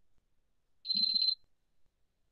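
A single brief high-pitched beep, about half a second long with a fluttering level, about a second in.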